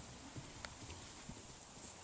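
Faint hoofbeats of a horse cantering loose on grass, a few soft, irregular thuds.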